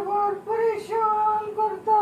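A woman's high-pitched wail, held on long notes with short breaks between them.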